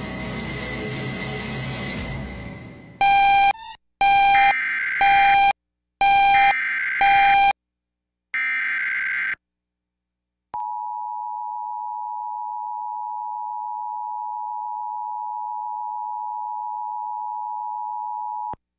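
Background music fading out over the first few seconds. Then the Emergency Alert System SAME header: a series of short, loud, warbling digital data bursts separated by brief silences. From about ten seconds in, the steady two-tone EAS attention signal, announcing a Severe Thunderstorm Warning.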